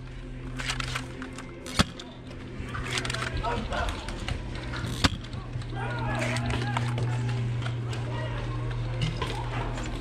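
Two sharp shots from a lever-action foam dart blaster, about three seconds apart, with distant shouting voices over a steady low hum.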